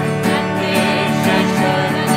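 Devotional kirtan: a harmonium's steady reedy chords and a strummed acoustic guitar accompanying a woman and a man singing together.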